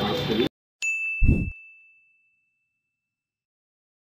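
Outdoor speech and crowd noise cut off abruptly half a second in, then an end-card logo sting: one bright ding that rings out for about two seconds, with a short low thud just after it.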